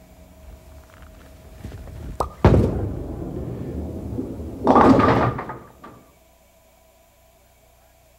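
Bowling ball set down on the wooden lane about two and a half seconds in and rolling with a steady low rumble, then hitting the pins near five seconds with a loud clatter of falling pins that dies away about a second later. It is a harder shot thrown straight down the outside line.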